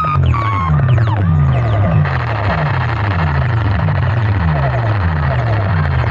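Electronic DJ music played very loud through a large outdoor horn-loudspeaker sound box. A deep bass pulse drops in pitch on each beat, about two beats a second. A high falling tone sounds near the start, and a brighter hiss fills in from about two seconds.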